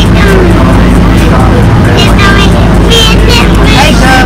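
City bus running on the road, heard from inside the moving bus: a steady low engine hum with road noise.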